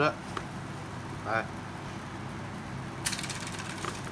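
Handling noise from a carbon fishing rod and its metal line guides: a quick rattle of clicks about three seconds in, over a steady low hum.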